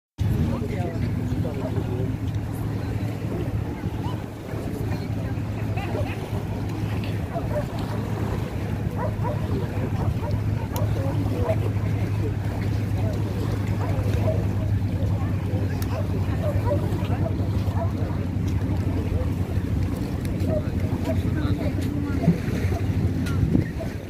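Outdoor lakeshore ambience: a steady low hum runs throughout under wind on the microphone, with faint voices of people on the beach.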